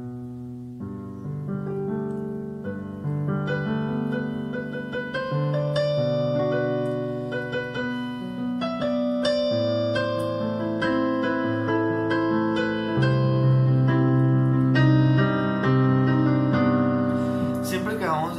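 Electronic keyboard with a piano sound playing an arpeggiated G – Bm7 – Am – C – C minor chord progression in 4/4 with both hands, the notes entering one after another over shifting bass notes. The playing grows louder in the last few seconds.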